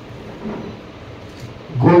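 A pause in a man's speech, filled with steady room hiss and a brief faint low sound about half a second in; his voice comes back loudly near the end.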